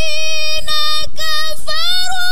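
A female Quran reciter (qari'ah) chanting in melodic tilawah style through a microphone, holding a high drawn-out note. The note breaks off briefly twice, then climbs in pitch near the end.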